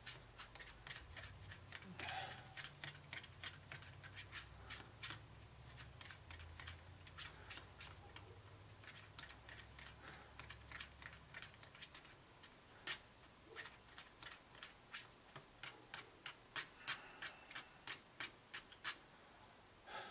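A plastic fork stirring liquid two-part urethane foam in a paper cup, tapping and scraping against the cup wall in a run of faint, irregular clicks several times a second.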